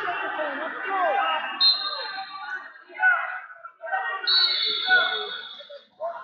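Two steady, high referee's whistle blasts: a short one about a second and a half in and a longer one through the last two seconds. They sound over voices echoing in a large hall.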